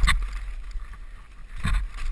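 Mountain bike rattling over a rocky trail on a fast descent, with two loud bursts of clatter, at the start and near the end, over a steady rumble of wind on the camera's microphone.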